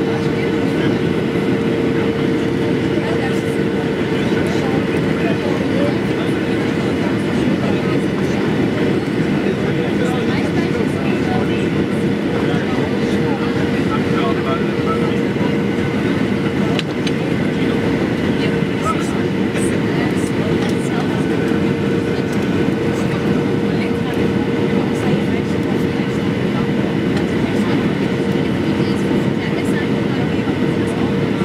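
Steady in-flight cabin noise of a Boeing 737-800, its CFM56 turbofans and the airflow past the fuselage making a loud, even rush with a constant hum.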